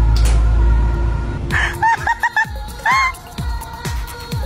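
A heavy low rumble for about the first second and a half, then a woman's high-pitched laugh in quick repeated bursts.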